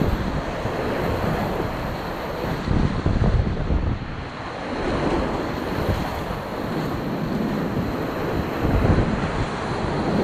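Whitewater rapids rushing and splashing around a kayak, heard close on the camera's microphone with a low rumble. The water surges louder about three seconds in and again near the end.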